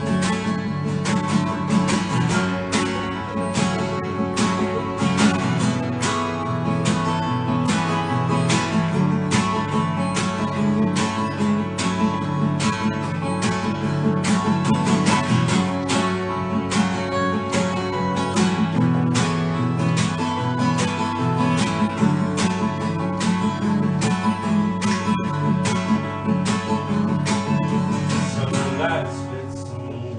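Two acoustic guitars played live together in an instrumental break, strummed in a steady, even rhythm.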